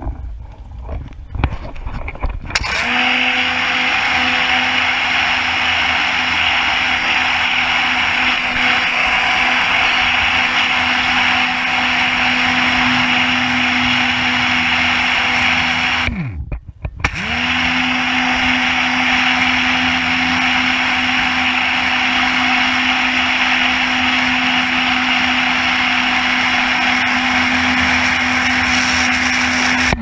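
Pressure washer running with a snow foam lance spraying: a steady motor hum under a loud spray hiss. About halfway through the trigger is let go, the motor winds down and stops for about a second, then spins back up and runs again until it stops near the end.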